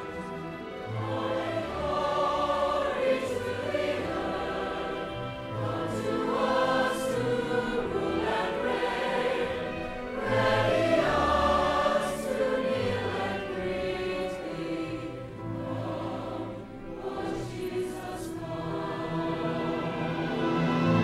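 A choir singing with instrumental accompaniment.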